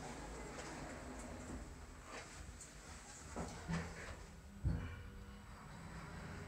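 Otis elevator car doors sliding shut, with faint rumbling and light knocks, a short low hum, then a dull thud as they close, about three-quarters of the way through.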